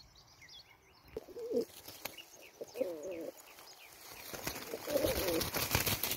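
A Spanish sport pigeon (palomo deportivo) coos in three short warbling phrases, about a second, three seconds and five seconds in, while small birds chirp faintly in the background. In the last second and a half a run of crackling, rustling noise is louder than the cooing.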